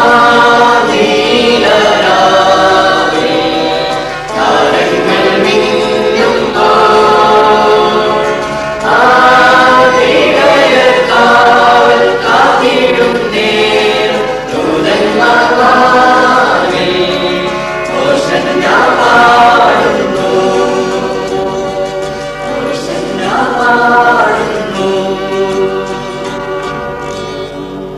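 A mixed church choir of children and adults singing a Malayalam Christmas carol, in sung phrases of held notes. The singing grows quieter near the end.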